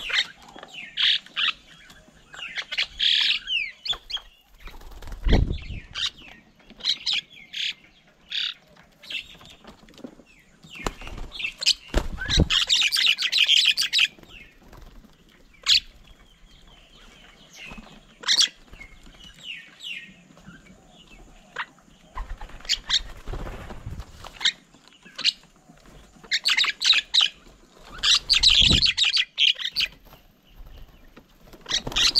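Birds at a feeding table, mynas among them: repeated bouts of harsh chattering calls, the longest about twelve seconds in and again near the end, with wing flaps and a few dull thumps as birds land and take off.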